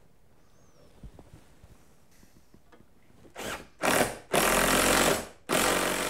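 Cordless impact driver driving a lag screw through the garage-door track into the wood frame. It runs in several short bursts over the second half, the longest about a second.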